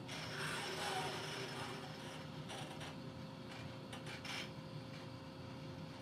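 Faint mechanical whirring and a few clicks from a Baxter robot's arm as it moves, played over a hall's loudspeakers with a steady low hum under it.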